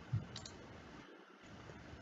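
A couple of faint clicks within the first half second over low room hiss: a computer mouse clicking to advance a presentation slide.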